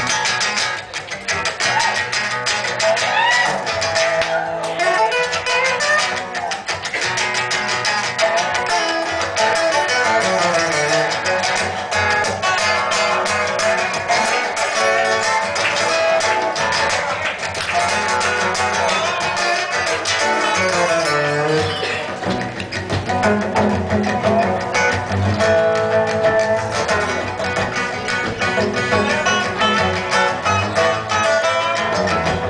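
Acoustic guitars playing an instrumental intro, with a slide guitar playing lead lines that glide up and down in pitch.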